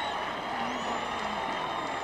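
Steady background noise from an old televised baseball game's soundtrack: a stadium crowd murmur under tape hiss, with a faint high whine, while the play goes on without commentary.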